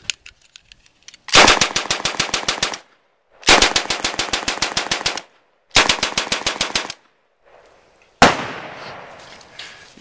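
A 1944 M3 'grease gun' submachine gun firing .45 ACP on full auto in three bursts of rapid, evenly spaced shots at its slow rate of fire. Near the end comes one more loud bang that trails off.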